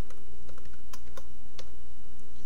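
Computer keyboard typing: a handful of irregular keystrokes as login details are entered, over a steady low hum.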